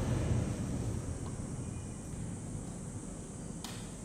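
Steady low rumble and hiss of background noise, a little louder in the first second, with one faint click near the end.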